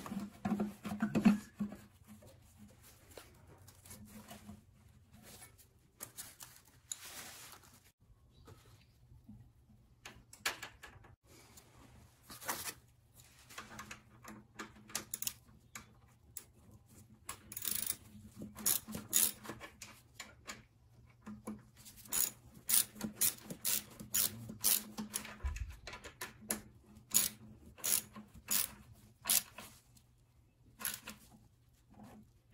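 Socket ratchet clicking as a bolt on the motorcycle engine is turned. The clicks come in short runs, sparse at first and closely spaced through the second half.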